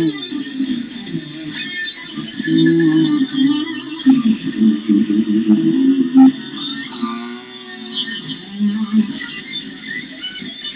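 Electric guitar playing a continuous run of quick single-note lead lines in the key of F sharp, moving between target notes of a B-to-G♯-minor (IV–ii) change.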